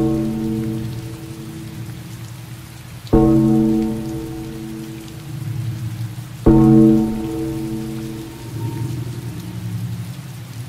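Steady rain, with three low, ringing struck musical notes about three seconds apart, each sounding suddenly and fading over a second or two.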